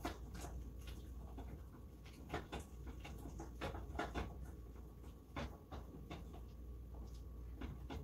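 A wooden spoon stirring a thick chocolate mixture in a pot, with irregular soft scrapes and knocks against the pot's sides, over a faint low steady hum.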